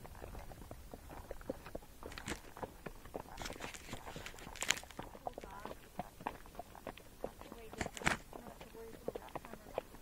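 Hoofbeats of a Tennessee Walking Horse and other trail horses walking on a dirt trail: a soft, uneven run of footfalls and knocks, with a couple of sharper ones about five and eight seconds in.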